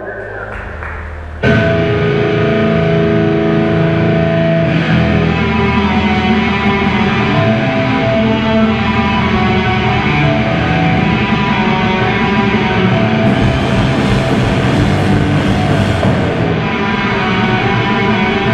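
Live rock band with guitars and drums playing amplified through a PA. After a quiet low hum, the full band comes in suddenly about a second and a half in and keeps playing steadily, with the cymbals louder for a few seconds near the end.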